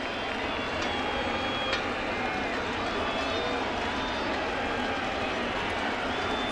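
Steady hubbub of a baseball stadium crowd, heard through a radio game broadcast, with faint scattered voices.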